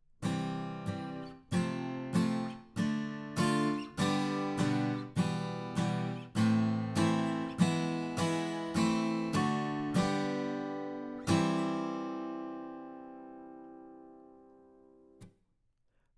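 Ample Sound AGT II virtual acoustic guitar, a sampled Taylor 714CE, strumming a quick series of chords played from a MIDI keyboard for about eleven seconds. The last chord rings out and slowly fades, and a faint click follows near the end.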